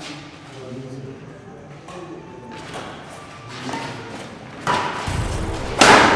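Badminton rally: a shuttlecock is struck by rackets several times, the hits coming more often and louder towards the end, with one sharp, loud hit just before the end. Faint voices sound in the background.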